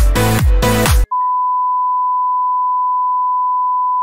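Electronic dance music with a steady beat cuts off abruptly about a second in. A long, steady electronic beep of a single pitch follows.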